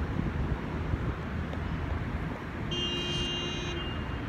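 Street traffic rumbling steadily, with a steady high-pitched tone about a second long near the end.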